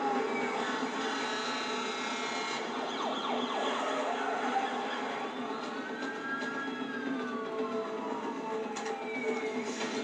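Emergency-vehicle sirens wailing, overlapping, with slow rises and falls in pitch, heard through a television's speaker.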